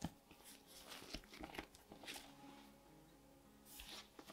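Bread dough being kneaded by hand on a marble pastry board, with butter just wrapped in: faint, irregular sticky slaps and clicks as the buttery dough is pressed and pulled against the board.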